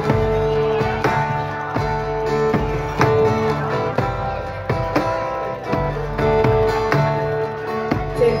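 Live acoustic band music: acoustic guitar and bass guitar playing a steady plucked rhythm under held melody notes.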